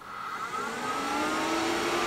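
Electronics cooling fans spinning up just after power-on: a whir that rises in pitch and loudness over about a second, then runs steadily.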